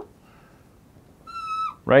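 Dry-erase marker squeaking on a whiteboard while an arrow is drawn: one short, high-pitched squeak, under half a second long, that dips in pitch as it ends, about a second and a half in.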